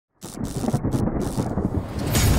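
Thunder sound effect on an animated logo intro: a dense, low rumble that starts suddenly a fraction of a second in and keeps rolling.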